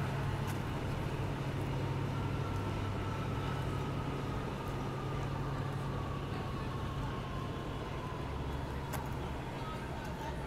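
City street traffic: a motor vehicle's engine running with a steady low hum that fades after about seven seconds, over a constant wash of street noise.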